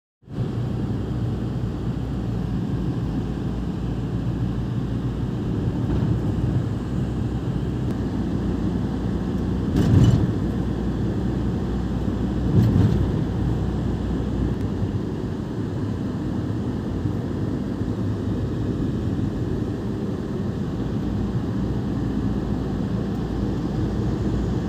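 Road and engine noise inside a moving van's cabin: a steady low rumble, with two brief louder swells about ten seconds in and again a couple of seconds later.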